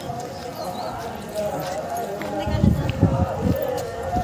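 Footsteps on a loose stony path with people's voices in the background; from a little past halfway, a run of heavy low thumps on the microphone becomes the loudest sound.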